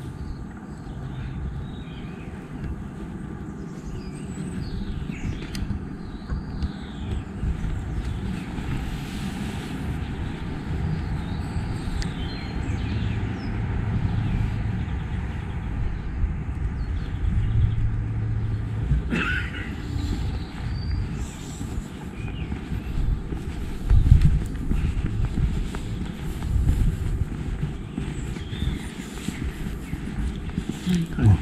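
Outdoor ambience: small birds chirping on and off over a steady low rumble, with a louder low thud late on.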